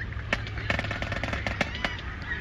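Scattered sharp clicks at irregular intervals, a few a second, over a faint murmur of voices.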